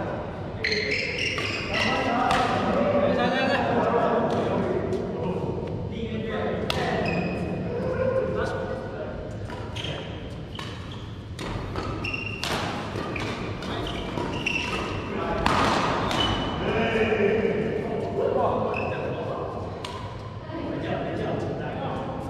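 Badminton doubles rally: rackets striking the shuttlecock in sharp, irregularly spaced cracks, echoing in a large sports hall, over a background of voices.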